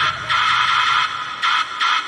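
Techno in a DJ mix at a break where the kick drum and bass drop out, leaving a pulsing high synth riff.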